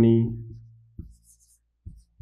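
A marker writing on a whiteboard, giving short, faint scratchy squeaks and taps from about a second in. Before that, a man's drawn-out spoken syllable fades away over the first half second.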